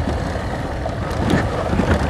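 Motorcycle engine running while riding over a rough dirt track, with wind buffeting the microphone and a few short knocks and rattles from the bumpy ground.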